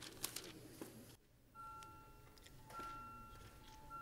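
Near silence: faint room tone with a few soft clicks. The sound drops out briefly about a second in, then a faint steady whine at two pitches sets in.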